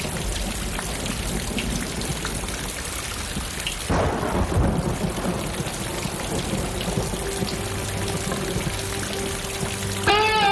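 Storm sound effect opening a song: steady rain, with a thunderclap about four seconds in that rumbles away. A faint held note comes in near the end.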